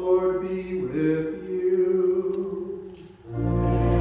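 A man's voice chanting a line of the liturgy on long, held notes. A little over three seconds in, louder, fuller music with deep bass notes comes in.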